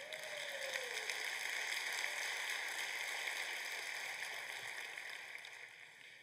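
Congregation applauding: many hands clapping in a large hall, swelling over the first seconds and then dying away.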